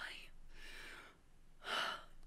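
A woman's breathing: a soft breath at the start, then a short, sharp gasp-like intake of breath near the end.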